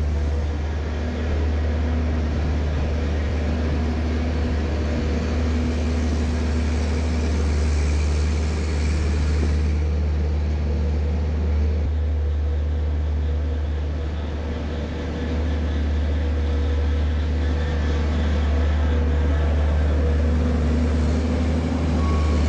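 A farm machine's engine running steadily with a low rumble while bedding is spread in the freestalls.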